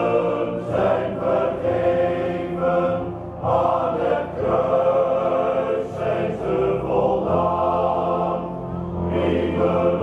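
Male voice choir singing in harmony, with short breaths between phrases.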